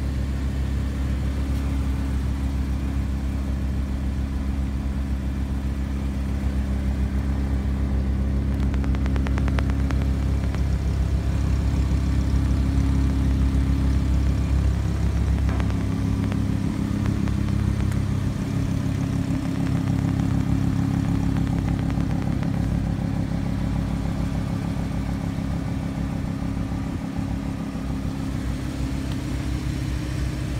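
Lamborghini Huracán LP 610-4's V10 engine idling steadily, with a deep low note that eases off about halfway through.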